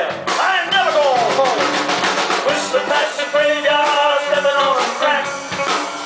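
Live band playing between sung lines: drum kit and electric bass under a lead line with sliding, bending notes that settles into a long held note in the second half.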